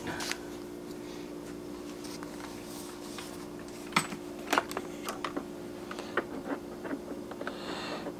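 A steady low hum from a running 12-volt power inverter. From about four seconds in, scattered light clicks and knocks come as a power cord and plug are handled.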